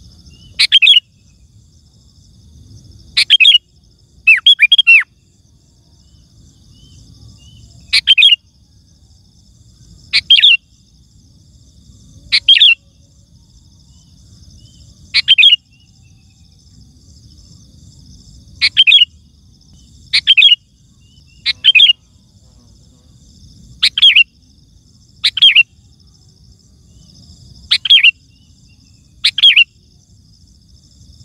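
Sooty-headed bulbul (kutilang) singing: short, loud calls about every two seconds, each falling in pitch, some coming in quick pairs. A faint steady insect trill runs underneath.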